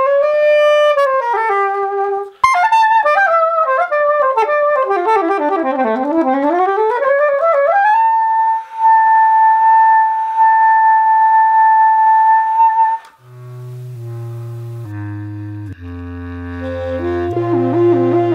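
Solo saxophone playing quick runs of notes, one sweeping down to its low range and back up, then one long held note of about five seconds. Near the end it gives way to background music: steady chords over a low bass line.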